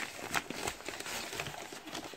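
A white mailer bag crinkling and rustling in irregular crackles as a boxed set is worked out of it.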